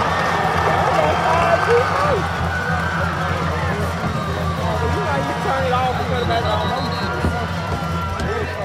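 Football stadium crowd: many spectators shouting and calling out at once over a steady low hum.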